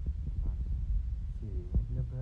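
Faulty, muffled phone-microphone audio: a heavy low rumble with a few soft knocks as the bag and box are handled. A muffled voice begins near the end.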